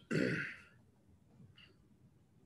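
A man clearing his throat once, briefly, right after speaking, followed by a faint click about a second and a half in.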